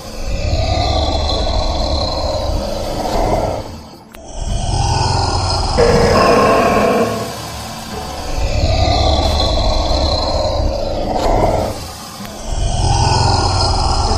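Komodo dragon growls: four long rasping growls, each about three seconds, with a deep rumble under them and short breaks between.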